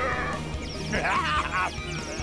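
Cartoon background music under a wavering, bleat-like cartoon vocal cry, heard twice, fitting a sea creature knocked dizzy. A light twinkling effect runs through the second half.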